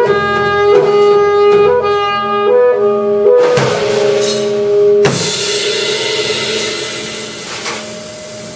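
Alto saxophone holding a long note, broken by a few brief higher notes, over a jazz drum kit. About five seconds in, a cymbal crash comes in and rings, slowly fading away.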